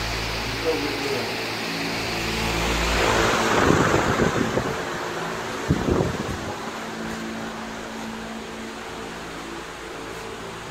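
A steady mechanical hum, with a burst of rustling and knocks from about three seconds in and one sharp knock near the middle, as a handheld phone camera is moved and brushed against things.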